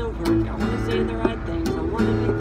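Acoustic guitar strummed in a steady rhythm, about two strokes a second, its chords ringing between strokes.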